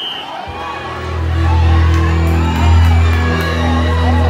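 Music with heavy, sustained bass notes that come in about a second in and grow louder, over a crowd cheering.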